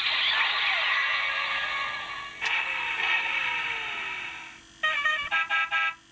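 Electronic sound effects played through the small speaker of a Kamen Rider Drive robot toy. First a dense electronic jingle, then a click about two and a half seconds in and a slowly falling tone, then a quick run of short beeps near the end as the toy's face lights up.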